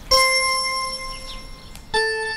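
Two bell-like chime notes: the first struck just after the start and ringing down for nearly two seconds, the second, slightly lower, struck near the end.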